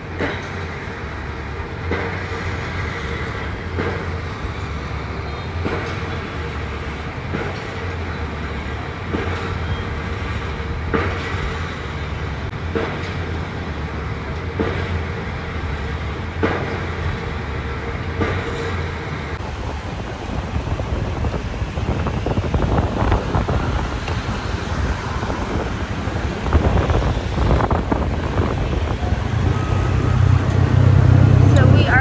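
Steady hum of heavy city traffic heard from high above, with faint steady tones. About two-thirds of the way in it gives way to a ride in an open motorbike tuk-tuk: a rougher engine-and-road rumble with wind buffeting the microphone, growing louder near the end.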